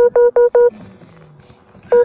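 A run of four quick, identical electronic beeps at one pitch, then a pause and the same beeps starting again near the end.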